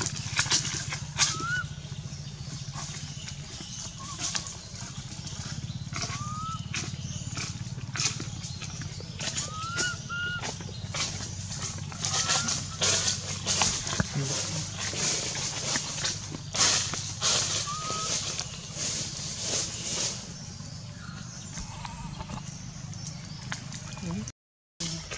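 Crackling and rustling of dry leaf litter, many small sharp clicks, with about half a dozen short rising chirps scattered through it and a steady low hum beneath.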